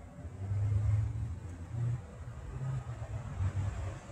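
Low, steady rumble of a vehicle engine, swelling a little about half a second to a second in.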